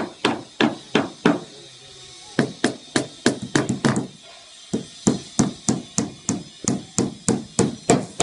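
Hammer striking a wooden panel in three runs of quick, even blows, about three to four a second, with short pauses between the runs.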